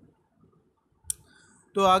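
A pause in near quiet broken by a single short, sharp click about a second in.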